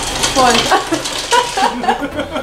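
Bar ice machine dispensing ice into a glass, a rattling noise with clicks, while a man's voice laughs and talks over it.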